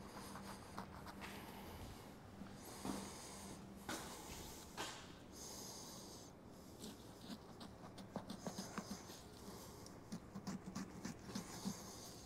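Faint sounds of a knife cutting through a whitetail deer's hide: a few short, hissy slicing strokes and scattered small ticks, denser near the end, over a faint steady low hum.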